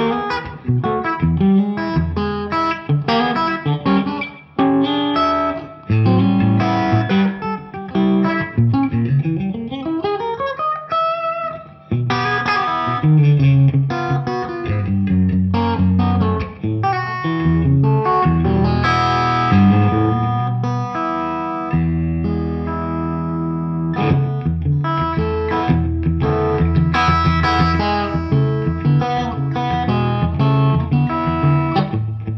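Fender Custom Shop 70th Anniversary Stratocaster (NOS), an electric guitar with three single-coil pickups, played through an amplifier: a run of notes and chords, with one note sliding smoothly upward about ten seconds in.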